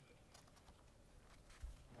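Near silence: room tone with a few faint clicks and a soft low thump about one and a half seconds in.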